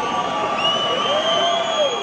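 Large arena crowd at a metal concert cheering and shouting, with one voice holding a long high call over the roar from about half a second in that drops away near the end.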